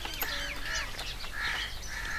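Several short bird calls in a row, quieter than the talk around them.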